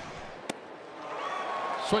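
A baseball pitch smacking into the catcher's mitt with one sharp pop on a swing-and-miss strike three. After it comes a rising noise of the stadium crowd cheering the strikeout.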